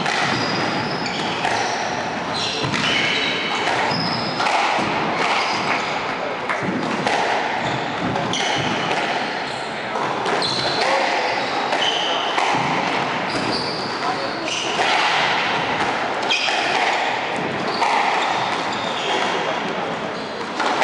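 Squash ball being struck and rebounding off the court walls, with sneakers squeaking on the wooden court floor, in a reverberant hall with a steady background of voices.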